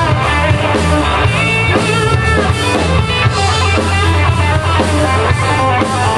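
A rock band playing live and loud: electric guitars over a drum kit.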